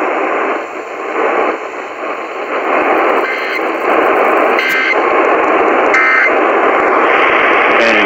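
AM radio static and hiss, with three brief tone data bursts about a second and a half apart in the second half: the Emergency Alert System end-of-message signal closing a required monthly test.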